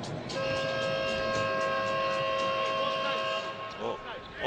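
Basketball arena horn sounding one steady, chord-like blast of about three seconds during a stoppage in play.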